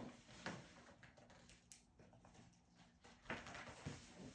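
Near silence with faint rustling of paper book pages being handled, and a slightly louder rustle near the end.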